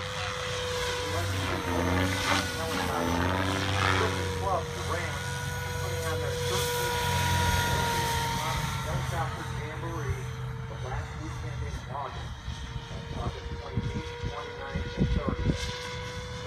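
SAB Goblin 700 electric RC helicopter with a Scorpion brushless motor, flying a 3D demo: a steady motor-and-rotor whine that holds one pitch throughout, with rotor noise swelling and fading as the helicopter manoeuvres.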